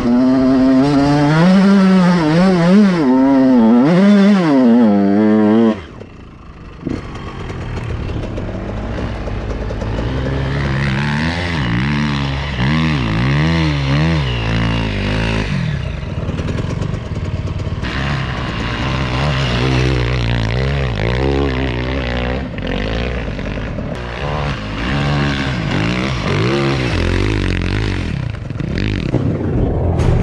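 KTM SX 125 two-stroke motocross bike engine being ridden, its pitch rising and falling with the throttle. The level drops abruptly about six seconds in, then the engine note comes back and keeps rising and falling at lower revs through the rest.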